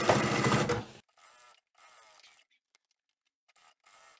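Sewing machine running at speed, top-stitching a seam in upholstery swatch fabric, for about the first second, then cutting off suddenly; after that, near silence.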